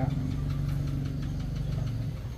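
An engine running steadily with a low, even hum that eases off near the end.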